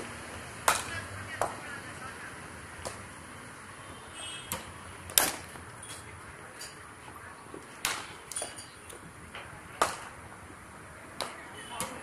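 Cricket bats striking balls in practice nets: a string of sharp cracks at irregular intervals, the loudest about a second in, at about five seconds and near ten seconds, with fainter knocks between from neighbouring nets.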